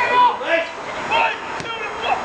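Raised voices shouting across a football pitch, with one sharp thud of the football being kicked about one and a half seconds in.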